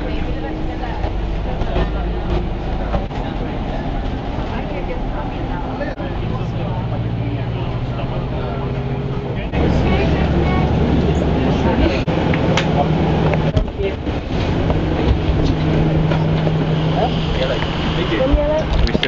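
Engine hum and road noise of a moving bus heard from inside the cabin, the engine note changing pitch about six seconds in and again, louder, about nine and a half seconds in.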